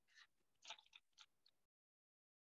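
Near silence: a few faint short clicks over a low hiss on a video-call line, which cuts off abruptly a little past halfway.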